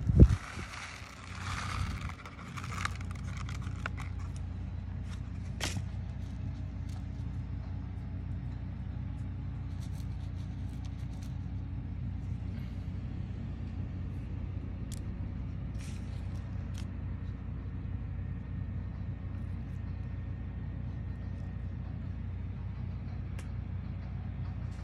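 A small paper seed packet rustling as beet seeds are shaken out into a gloved palm during the first few seconds, then a few faint light clicks over a steady low background rumble.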